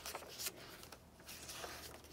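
Faint rustling of the paper pages of a thick handmade junk journal as they are turned by hand, with a few soft brushes and flaps of paper.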